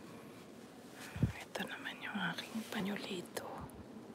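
A person speaking in a hushed, whispered voice for about two seconds, beginning just after a soft thump about a second in.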